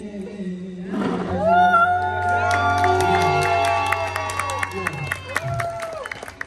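A singer performs live into a microphone over backing music, with the crowd cheering. A long, high held note runs from about a second in to about five seconds, over a steady bass line and a crisp beat.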